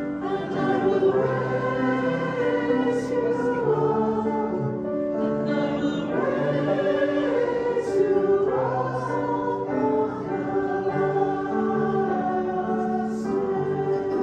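A choir singing a hymn in long held notes, with accompaniment underneath.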